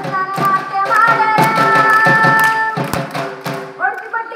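A girl singing solo into a microphone, holding one long note about a second in. Under the voice runs a steady beat of sharp percussive strikes.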